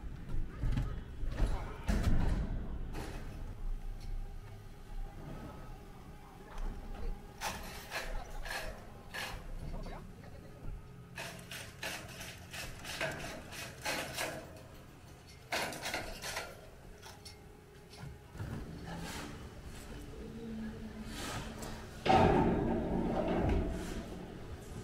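Steel I-beams being handled and set on a concrete rooftop: scattered metal knocks and clanks, some in quick clusters, with a louder thud about 22 seconds in.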